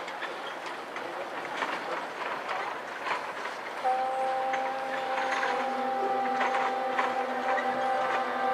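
Marching band in a soft passage of its field show: a low hiss with scattered light taps, then about four seconds in a single long note comes in and is held steady.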